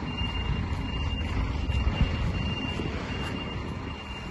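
Loaded flatbed truck's diesel engine running with a steady low rumble, its exhaust broken according to the owner. A thin high electronic beep sounds on and off over it.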